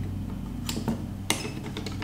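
Screwdriver working a screw in the top of a two-barrel carburetor: a few sharp metal clicks in the second half, over a steady low hum.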